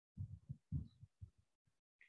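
A quick run of faint, low, muffled thumps, about five in under two seconds.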